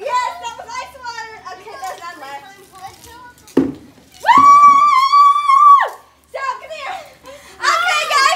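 A girl's single long, high-pitched scream, held steady for about a second and a half, as she reacts to being drenched with a bucket of ice water. Children's chatter comes before it, with a short thump just before the scream.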